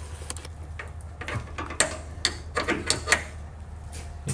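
Sliding metal rod latches on a bus door being worked by hand: a string of irregular metallic clicks and clacks, over a steady low hum.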